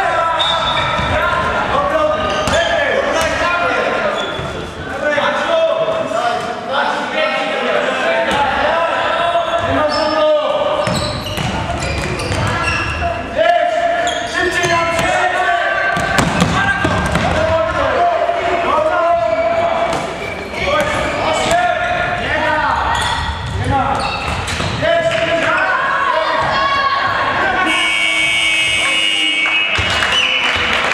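A handball bouncing repeatedly on a sports-hall floor during play, with players' voices calling out in a large echoing hall. A steady high tone sounds for about two seconds near the end.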